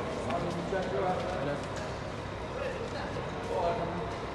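Indistinct voices of people talking, with footsteps on a tiled floor.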